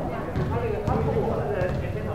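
Indistinct voices of several people talking on a court, with a few light knocks.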